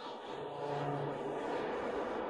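A steady rushing, whooshing sound effect with a low hum in it for about a second, swelling in at the start.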